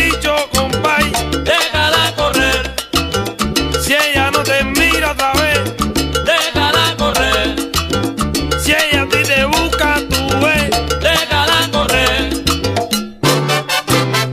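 Salsa band playing an instrumental stretch, horns over bass and percussion. The band stops for a short break about thirteen seconds in, then comes back in.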